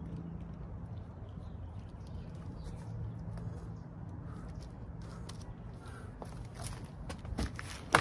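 Footsteps approaching over a low steady outdoor hum, then a heavy cardboard box of coilovers set down with a sharp knock near the end.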